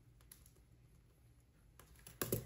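Near silence: quiet room tone with a few faint short clicks, as of a pen on paper.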